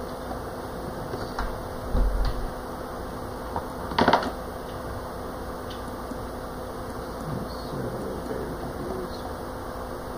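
Steady hum of room noise, like a fan, with a low thump about two seconds in and a sharp knock about four seconds in, plus a few faint ticks.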